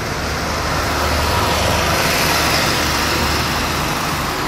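Road traffic noise: a steady low rumble with a hiss, as of a vehicle passing on the street, swelling a little in the middle and easing near the end.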